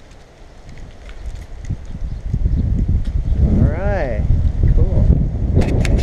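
Low wind and handling rumble on the microphone that grows louder after about two seconds. A brief voice-like sound rises and falls about four seconds in, with a fainter one near five seconds and a few sharp clicks near the end.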